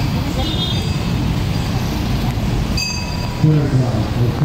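Steady rumble of city street traffic, with a voice talking near the end.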